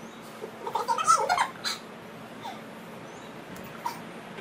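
A girl's brief, high-pitched giggling squeals, bunched about a second in, with one shorter squeak near the middle.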